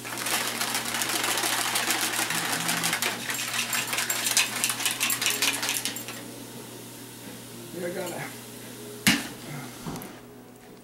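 Plastic protein shaker bottle being shaken hard, its contents rattling in fast, dense clicks for about six seconds before stopping. A single sharp click comes near the end.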